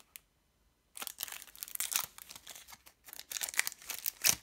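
A thin foil trading-card booster pack (Topps Match Attax) being torn open by hand, with a crackling, crinkling rip. It starts about a second in and goes on in uneven spells.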